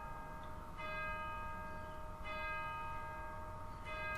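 A bell struck three times at even intervals of about a second and a half, each stroke ringing on in a steady tone.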